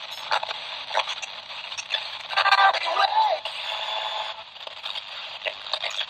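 The built-in speaker of a ByronStatics portable cassette player's AM/FM radio being tuned: thin, tinny hiss and crackling static with scattered clicks, and a brief snatch of a station's voice with a sliding pitch about two and a half seconds in.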